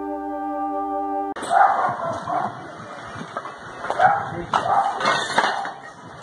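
A held synthesizer chord from a news intro jingle, cut off about a second in. Then a noisy phone recording with irregular short, sharp calls, loudest about two and four seconds in.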